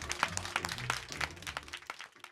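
Hand clapping over a low music bed, both fading out near the end.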